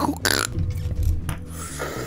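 A short, throaty burp-like vocal noise from a man about a quarter second in, over a low bass line of background music.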